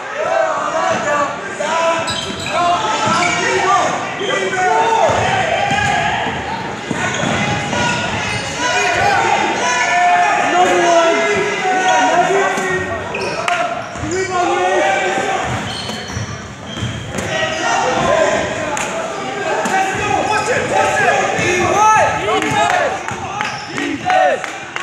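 Basketball game in play in a gym: a ball bouncing on the hardwood floor among players' and spectators' shouts, all echoing in the large hall.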